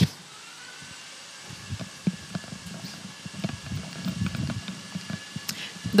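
Quiet background with faint, irregular low knocks and rustles that start about a second and a half in.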